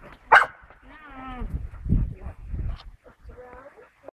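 A bull terrier vocalizing while it bounces on a trampoline: a sharp bark just after the start, then wavering whines, with low thuds from the trampoline mat in the middle.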